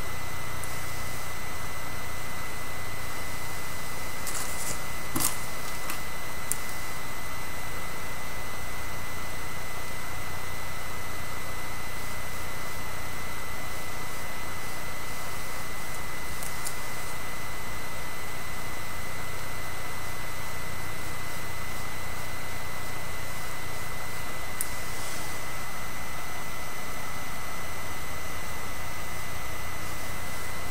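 Steady hiss of recording noise with a low hum and a thin, constant high whine, broken by a few faint, brief clicks of hands handling hair and pins.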